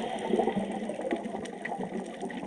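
Underwater ambience picked up by a camera in its housing: a muffled wash of moving water with faint scattered clicks, one sharper click about one and a half seconds in.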